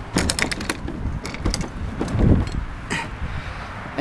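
An old plastic child-carrier bike trailer being rolled out over paving stones: a run of irregular clicks and rattles, with a duller knock a little past halfway.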